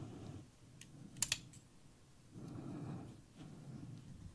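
Faint handling noise as a hand picks up a small plastic X-Wing toy: a few light clicks about a second in, then soft rustling as it is turned over.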